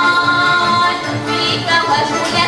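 Live folk music from accordion and guitars, with a woman singing. A long note is held through the first second before the melody moves on.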